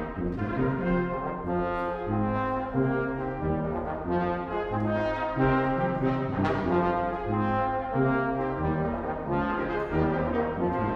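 Brass quintet of two trumpets, French horn, trombone and tuba playing together: sustained chords that change every half second to a second over a moving tuba bass line.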